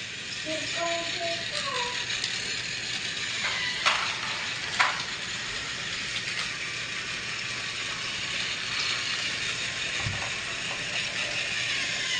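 Battery-powered Trackmaster toy trains running on plastic track: a steady whir of small geared motors with wheel rattle, and two sharp clicks at about four and five seconds in.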